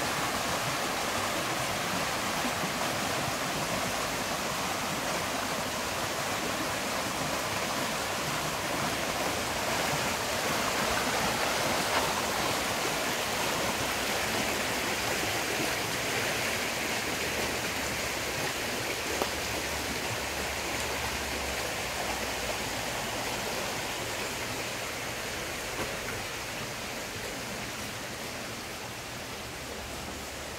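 Shallow creek running over rocks: a steady rushing of water that grows somewhat fainter over the last several seconds.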